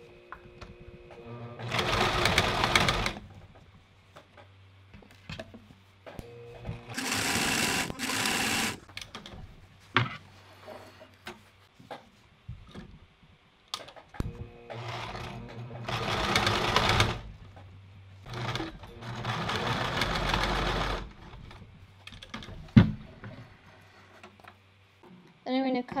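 Home sewing machine stitching a straight seam through two layers of cotton fabric, in four short runs of one to three seconds each with pauses between them. A sharp click sounds near the end.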